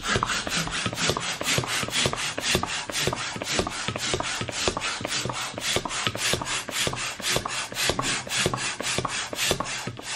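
Hand balloon pump being worked in quick, even strokes, about four a second, each a short rasping rush of air, as a polka-dot party balloon inflates on its nozzle.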